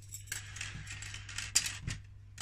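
Fine netting of a fish breeder rustling as it is unfolded and handled. A few light metallic clinks come in the second half, as thin metal rods are set down on the tabletop.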